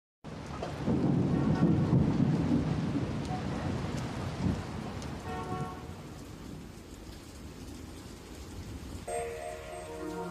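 Rain and a long roll of thunder, loudest in the first few seconds and slowly fading, with a few faint chiming notes over it. A soft sustained synth chord comes in near the end as the song's intro begins.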